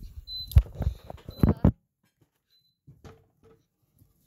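A few knocks and bumps of a phone being handled, about half a second and one and a half seconds in, then the sound cuts out to silence for about a second before a few faint taps.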